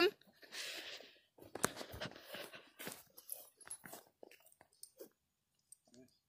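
Rustling and a few sharp clicks as hands work at a hound's collar and lead, with the dog moving about; near quiet in the last two seconds.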